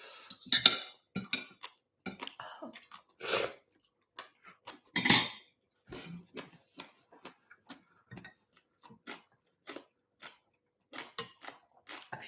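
Metal spoons and a fork clinking and scraping against dishes while people eat, in scattered short clicks with a few louder clinks, the loudest about five seconds in.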